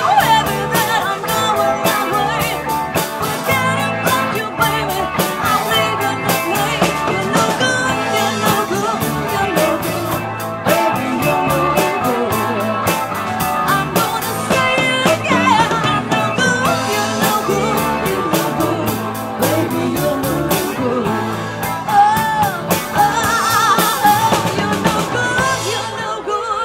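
Live rock band playing with drum kit, electric guitars, bass guitar and keyboard, loud and steady throughout.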